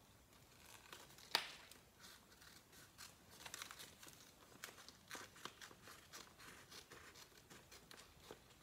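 Faint crinkling and rustling of a paper rub-on transfer sheet being handled, its white backing paper pulled away, with one sharp click about a second in.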